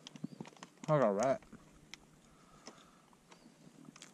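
A person's short wavering hum about a second in. Around it are small clicks and taps from handling fishing tackle and lure packaging.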